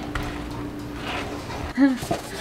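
A nonstick frying pan shaken and slid on a glass-top stove to loosen an omelette with a tortilla pressed on top, soft scraping over a steady hum, with a short voiced sound near the end.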